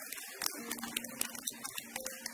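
A congregation clapping: scattered, uneven applause, with a steady low tone held underneath in the second half.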